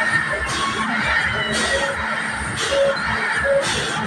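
Loud fairground music with a steady beat playing from a spinning ride's sound system, with riders shouting and cheering over it.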